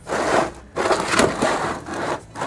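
Empty plastic battery boxes scrape against each other and the plywood benchtop as they are slid together and one is set inside the other. There are two rough scrapes with a short break between them.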